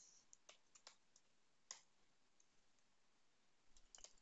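Faint computer keyboard keystrokes: several scattered clicks in the first two seconds, a quiet gap, then a few more near the end.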